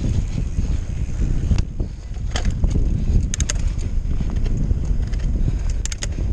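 Wind buffeting the helmet-camera microphone over the rumble of a mountain bike's tyres rolling down loose gravel and rock. A few sharp clicks and rattles from the bike come through, a cluster of them about halfway through and another just before the end.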